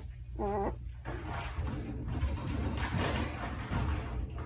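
A five-day-old German shepherd puppy gives one short whimper about half a second in, followed by a few seconds of soft rustling as it crawls on a fleece blanket.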